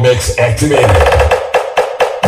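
Electronic dance music played loud through a big sound-system stack of 18-inch subwoofers and 15-inch speaker cabinets. The heavy bass beat drops out in a break a little past halfway, leaving a held tone and percussion above.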